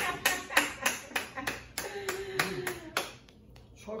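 Hands clapping in an even run, about four claps a second, stopping about three seconds in, with a voice underneath.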